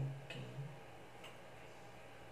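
A short low hummed vocal sound at the start, then two faint sharp clicks about a second apart, over a steady low background hum.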